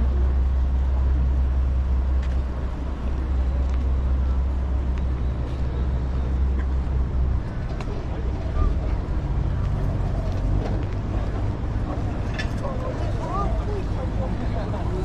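Outdoor city ambience: a steady low rumble, like a nearby engine or traffic, that drops off abruptly about seven seconds in, with people's voices talking in the background.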